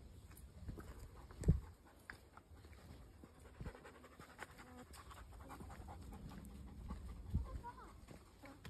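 A Bernese mountain dog panting as it walks, over footsteps on a dirt trail, with two low thumps, one about one and a half seconds in and one near the end.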